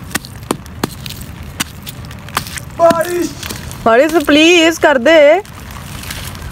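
Dry clods of soil crushed and crumbled by hand, giving scattered sharp crackles over the steady hiss of rain. About three seconds in, a voice wavering up and down in pitch rises over it and is the loudest sound.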